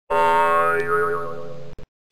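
A comic "boing" sound effect: one twangy, pitched tone whose pitch wobbles partway through, cut off abruptly near the end with a brief blip after it.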